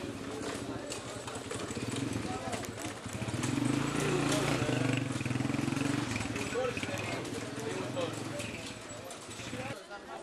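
Busy market bustle: many voices talking at once, with scattered knocks and footsteps. A low engine hum rises in the middle and fades about six seconds in.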